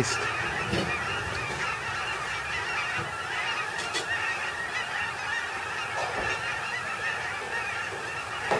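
A large flock of snow geese calling in flight overhead: a steady, dense chorus of many overlapping high honks.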